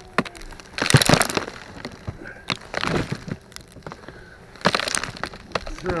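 Fiberglass batt insulation crackling and rustling as it is handled and pulled, in three short bursts about two seconds apart.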